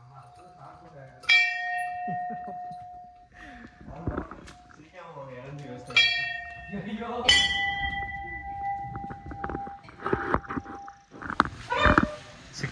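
Hanging temple bell struck three times, the second and third strikes close together. Each strike rings on and fades over a second or two.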